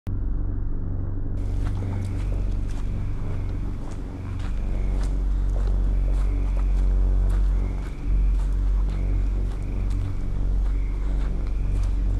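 Outdoor night ambience picked up by a handheld camera microphone: a heavy, steady low rumble with scattered faint clicks and rustles, and a faint high chirp repeating about once a second.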